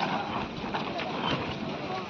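Background chatter of voices at a busy open-air food stall, with a few scattered sharp clicks and knocks.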